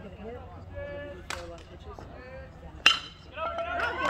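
A single sharp ping of a metal baseball bat striking a pitched ball, about three seconds in, with spectators' voices rising right after.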